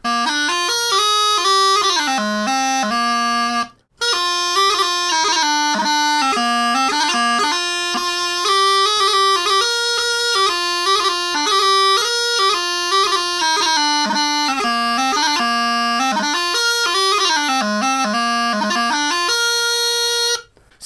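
Gibson long cocobolo practice chanter played: a bagpipe tune with quick note changes and grace notes, broken by a brief pause about four seconds in.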